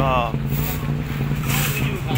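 Motor vehicle engine running with a steady low drone amid street traffic noise.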